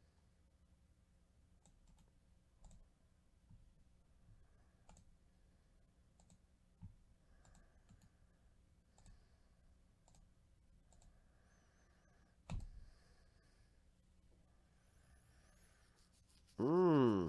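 Faint, scattered clicks of a computer mouse and keyboard, about a dozen, spread unevenly over a near-silent room. One louder knock comes about twelve seconds in.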